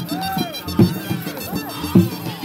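Live folk music: a dhol drum beaten in a dance rhythm, with heavy strokes about 0.8 s in and near the end among lighter ones, under a wavering melody on wind instruments.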